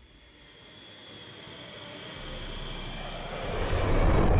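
Roar of a jet airliner diving toward the ground, with a high whine, swelling steadily from faint to loud as it approaches.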